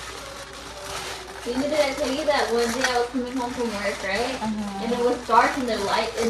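People talking, a conversation of several voices.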